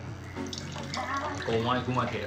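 Liquid pouring from a large jar into a drinking glass as the glass fills.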